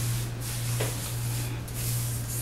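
Hands rubbing oil through twisted hair, a soft rustling noise, over a steady low hum.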